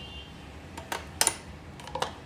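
A metal teaspoon clinking against a glass jar a few times. The loudest is a sharp clink with a brief ringing tone a little over a second in, and two lighter taps come near the end.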